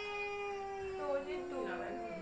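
A child's long drawn-out whine on one held note that sinks slightly in pitch near the end, with another voice briefly over it.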